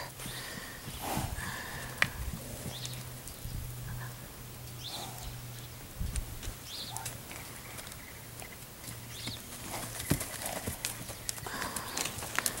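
Mustangs walking about on packed dirt: scattered dull hoof steps with a few sharper knocks, over a steady low hum.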